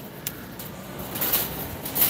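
Quiet steady background noise of a large store, with a few faint rattles from a metal shopping cart being pushed along.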